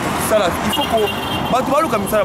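A man talking over a steady background of road traffic.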